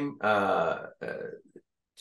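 A man's voice: a drawn-out hesitation sound lasting about a second, then a short fainter murmur, then a brief pause.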